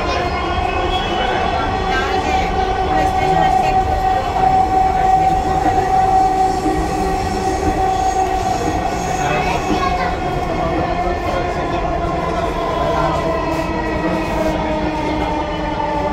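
Electric metro train running, heard from inside the carriage: a steady electric whine with several overtones over a low rumble. The whine sags slightly in pitch in the second half and climbs again near the end.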